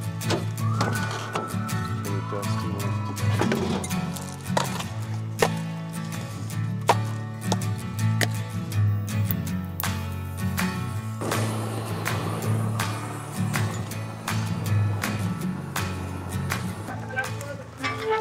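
Background music with a steady bass line and beat, with many short clicks and knocks over it.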